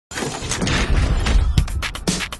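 Intro music of a TV programme: a dense, noisy sound-effect swell over a deep rumble, then sharp electronic beats starting about a second and a half in.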